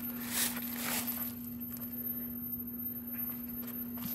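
A steady low hum throughout, with a short rustle about half a second in as a hand rubs the foam insulation on a refrigerant line set against the wall opening.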